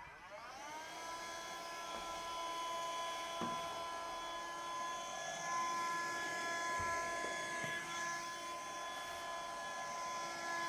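Handheld cordless window vacuum switching on and spinning up with a rising whine over the first second, then running at a steady pitch as it squeegees and sucks the wet glass board clean.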